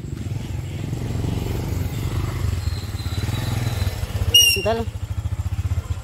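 A motor vehicle's engine running steadily close by, a low pulsing sound. This is the vehicle hauling firewood along a rough dirt track.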